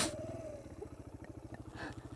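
Sinnis Apache 125cc single-cylinder motorcycle engine with a D.E.P exhaust running quietly at low revs, an even putter of firing pulses, as the bike creeps along.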